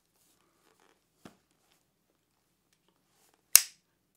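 A folding pocketknife's blade snapping open into place with one sharp click, about three and a half seconds in. Before it there is near silence, apart from a faint short sound about a second in.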